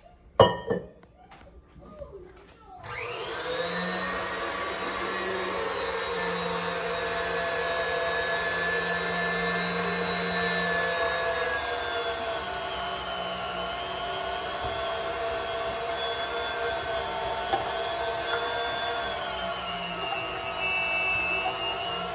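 A sharp knock, then about three seconds in a stand mixer's motor starts and runs steadily, driving its meat-grinder attachment as ham is fed through it. Its pitch sags a little midway as the grinder takes load.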